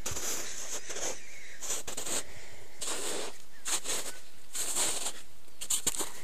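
Footsteps crunching through patchy snow and dry matted grass, a crunch every second or so.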